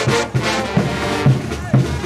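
Brass band playing, brass instruments over a steady bass drum beat of about two strokes a second.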